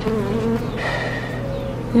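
Honeybees buzzing around an open hive, with a louder buzz from a bee close by in the first half second.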